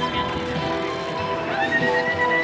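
Music playing over the hoofbeats of a horse galloping past. About one and a half seconds in, a high note rises and is held.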